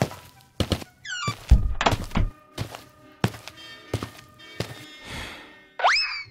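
A drum kit struck in an uneven run of single hits, some of them deep, a few with a short ring after. A quick rising swoop comes near the end.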